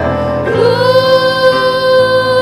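Women singing an Indonesian-language Christian worship song over backing music, holding one long note from about half a second in.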